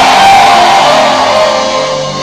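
Worship band playing music under the prayer: held chords with electric guitar, slowly fading toward the end.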